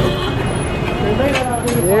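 Street traffic noise: a low, steady vehicle rumble with a couple of short clatters about a second and a half in, then a man's voice starts near the end.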